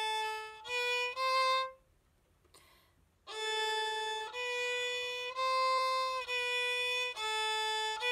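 Solo violin playing slow, separate bowed notes on the A string: open A, B, then C natural with the second finger in the low-two position. After a pause of about a second and a half, a longer phrase follows: A, B, C natural, B, A.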